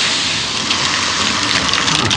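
A loud, steady hiss of several pressurised sprays going off at once, easing slightly toward the end.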